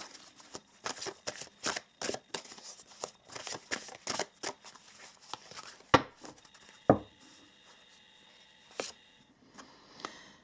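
A deck of oracle cards being shuffled by hand: a dense run of quick, soft, irregular card clicks and slaps for about six seconds, then two louder knocks about a second apart, then quieter with a single click.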